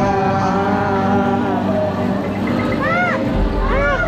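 Ambient music and soundscape of the Na'vi River Journey dark boat ride: held, sustained tones, with swooping calls that rise and fall about three seconds in and again near the end. A low rumble comes in a little past three seconds.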